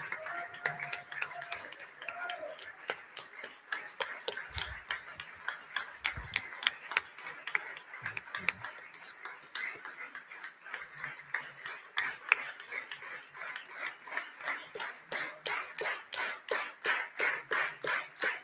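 Audience clapping in a hall: scattered applause that settles into slow, even clapping in unison near the end, calling the performer back on stage.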